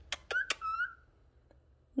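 Three quick kissing smacks with a cockatiel's two short whistled notes, the second rising slightly at its end, all over about a second in.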